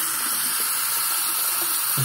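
Water running steadily from a tap into a cup holding salt.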